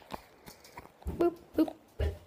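Two short, loud yelps in quick succession, a little under half a second apart.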